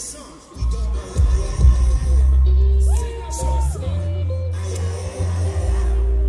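Live hip hop music played loud through a concert PA, with heavy bass and a melodic vocal line over it. The bass cuts out for a moment at the start and comes back about half a second in.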